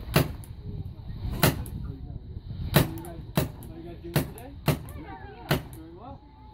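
Paintball marker firing a string of about seven single shots, each a sharp pop, at uneven intervals of about half a second to a second and a half.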